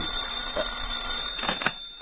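Radio-drama sound effect of a telephone bell ringing, with a short click about a second and a half in. The recording is narrow-band old broadcast audio.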